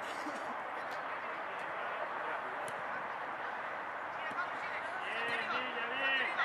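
Steady open-air background noise with a few faint knocks, and a man starting to shout about five seconds in.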